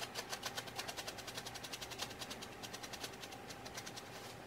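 Plastic spice jar of dried parsley flakes shaken over a plate: a rapid, even rattle of about eight to ten shakes a second.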